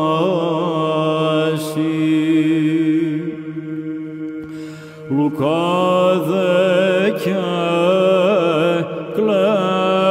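Male Byzantine chant in plagal first mode: a solo cantor sings an ornamented melody over a steady low held drone (the ison). The melodic line falls away in the middle, then comes back just after halfway with a rising, gliding phrase.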